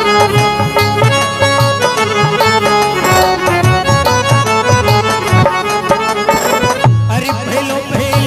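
Instrumental interlude of a folk devotional bhajan. A melody is played on a Roland Juno-G synthesizer keyboard over a steady drum beat, with a brief break in the music near the end.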